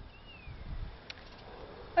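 Quiet outdoor background with a low rumble, and near the start one faint thin whistle falling in pitch, a distant bird call. There is a light click about a second in.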